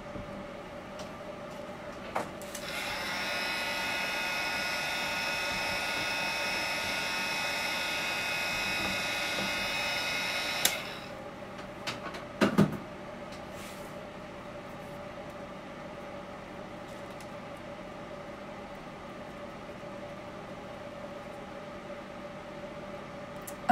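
Heat gun running for about eight seconds, a steady high motor whine over a rush of blown air, then switched off; it is used to dry and shrink a waterslide decal on a tumbler. A few knocks follow soon after.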